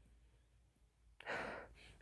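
Near silence, then about a second in, one short breath through the nose as a man smells a glass of beer held under his nose.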